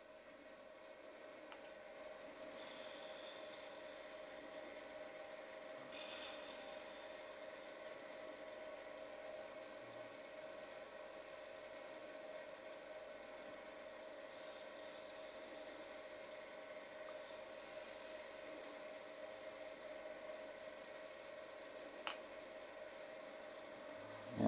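Small woodturning lathe running quietly with a steady hum, with a faint hiss of a turning tool cutting a spinning pencil lead. One short sharp click near the end.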